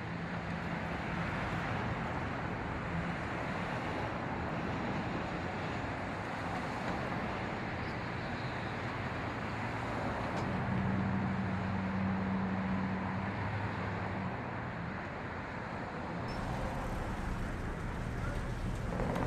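Steady outdoor ambience: an even rushing noise like distant road traffic, with a low hum underneath that grows stronger for a few seconds past the middle.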